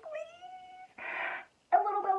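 A woman's high, held 'mmm' as she gives a hug-squeeze, lasting about a second, followed by a short breathy exhale.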